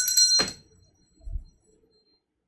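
A steady, high electronic tone, like an alarm or phone ring, cuts off abruptly about half a second in. A soft low thump follows a moment later.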